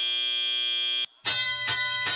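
FRC field sound system signalling the start of the driver-controlled (teleop) period. A steady high electronic tone cuts off abruptly about a second in. After a brief gap a chime-like tone with many overtones sounds, struck again about half a second later.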